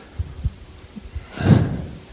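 Soft, low thumps of a handheld microphone being handled, and one breath into it about one and a half seconds in.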